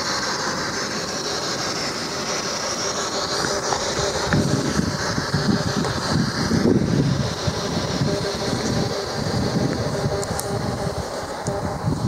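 A passing train rumbling, growing rougher and louder about four seconds in and easing off shortly before the end.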